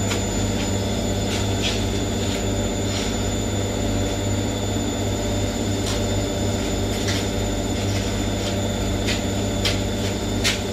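Washing machine on its spin cycle: a steady hum from the spinning drum and motor, with a few light, irregular ticks scattered through it.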